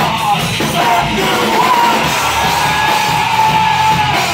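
A live circus-punk rock band plays loud, with a singer yelling into the microphone. Through the second half the voice holds one long note.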